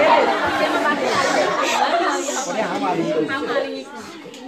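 A group of children chattering, many voices talking over one another, dying down just before the end.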